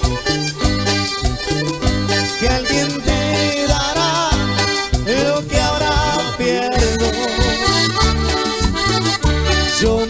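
Live Latin American dance band playing an instrumental passage, an accordion melody over a steady bass and percussion beat. About five seconds in the bass drops out for a short break, then the beat comes back.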